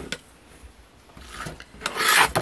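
Cutting tools handled on a self-healing cutting mat: a light click just after the start as the rotary cutter comes off the fabric, soft scuffs, then a louder scrape near the end as the acrylic quilting ruler slides across the mat.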